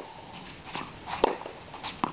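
Tennis ball being hit and bouncing on a hard court during a rally: a few sharp pops, the loudest a little past the middle.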